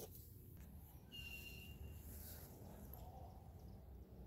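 Near silence: a faint low rumble, as of light wind on the microphone, with one faint, short, high bird call about a second in.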